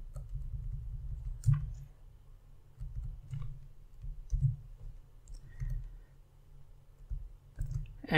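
A few separate clicks from a computer keyboard and mouse, spaced a second or more apart, over a low steady background rumble.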